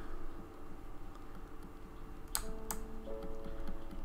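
Quiet piano background music, with new notes entering a little past halfway, and two sharp computer keyboard keystrokes about half a second apart near the middle.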